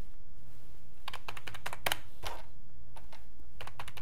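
Computer keyboard keys being pressed in short runs of clicks: a few about a second in, single taps near two seconds, and a quick run just before the end. A low steady hum lies underneath.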